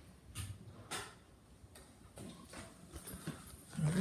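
Faint footsteps and scuffs on a hardwood floor: a couple of sharp knocks in the first second, softer steps after, and a brief louder low thump just before the end.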